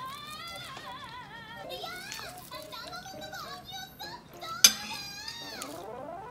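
High-pitched, sing-song voices, like children or cartoon characters, with wavering pitch over music. A single sharp click sounds about four and a half seconds in, louder than the voices.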